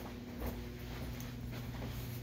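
Soft footsteps of a person walking through an empty house, over a steady low hum.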